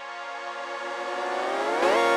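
Electronic music intro: a held synthesizer chord swelling in loudness, with its notes gliding upward in pitch near the end and settling into a new sustained chord.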